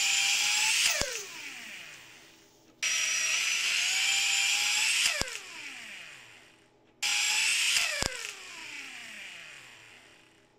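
A Ryobi 4 V lithium cordless screwdriver's motor and gearbox run at high speed with a high-pitched whine. It is overvolted at about 28.5 volts from a bench power supply. It is cut three times, each time with a click and a falling whine as it spins down, and restarts twice, about three and seven seconds in.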